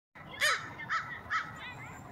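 American crow cawing three times in quick succession, about half a second apart, the first caw the loudest, then a few fainter calls near the end.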